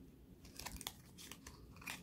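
Faint rustling and light clicks of stiff paper bookmarks being shuffled and separated between fingers, with a cluster of small clicks in the second half and another near the end.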